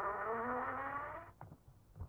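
A buzzing drone from the film's soundtrack, made of many wavering overtones, fading out a little past a second in.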